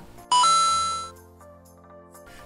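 A bright two-note chime, the second note higher, with a low tone under it, fading out over about a second and a half: a sound-effect sting marking a segment change.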